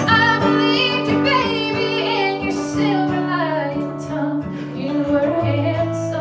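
A woman singing a slow song, accompanying herself on a strummed acoustic guitar.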